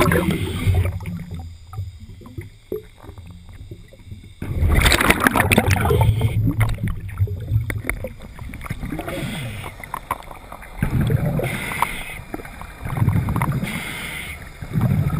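Scuba diver's exhaled bubbles rushing from the regulator, heard underwater. They come in bubbling bursts a few seconds apart, one per breath, with quieter stretches between.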